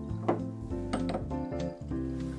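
Background music with held notes, over brief squelching and creaking from a hand-held metal lemon squeezer pressing juice into a glass, loudest about a third of a second in and again about a second in.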